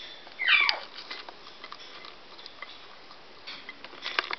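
A parrot's call: one short squawk about half a second in that slides steeply downward in pitch, followed by scattered faint clicks and taps.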